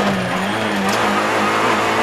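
Rally car's engine running at fairly steady revs, heard from inside the cockpit.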